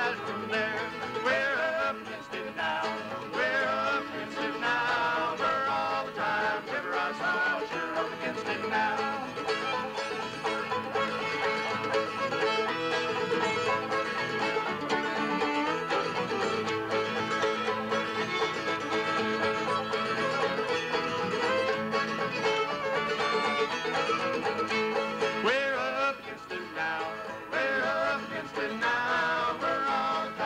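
Bluegrass string band playing a tune on banjo, fiddle, mandolin, guitar and upright bass, the banjo and fiddle to the fore.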